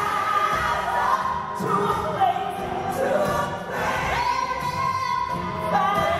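A woman singing into a microphone, holding long notes that waver in pitch.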